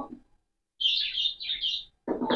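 A small bird chirping: a quick run of several short, high chirps starting a little under a second in and lasting about a second.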